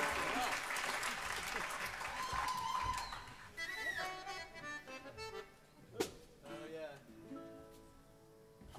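Audience applause and cheering after a song, fading out over the first three seconds, with a held whistle near the end of it. Scattered voices and pitched sounds follow, with a single sharp click a couple of seconds before the end.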